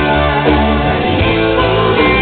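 Live rock band playing a loud instrumental stretch between vocal lines, with strummed acoustic-electric guitar to the fore over drums.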